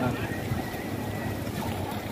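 Wind buffeting the microphone as a steady, fluctuating low rumble, with voices of people nearby.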